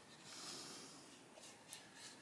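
Near silence: room tone, with a faint soft hiss about half a second in and a tiny click near the end.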